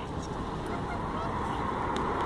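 Steady background hum of street traffic, with no distinct sound standing out from it.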